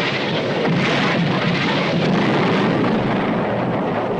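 Artillery shell explosions on a 1955 war film's soundtrack, running together into a loud, continuous din with no separate blasts standing out.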